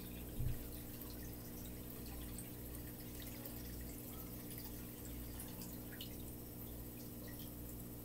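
Faint, sparse drips of water falling into an aquarium as the last of a container is emptied into it, over a steady low hum. A soft thump comes about half a second in.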